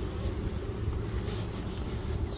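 Steady low hum of a mass of honeybees on a frame lifted from an open hive, mixed with wind rumbling on the microphone.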